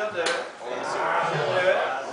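Indistinct talking voices, with a short sharp click at the start.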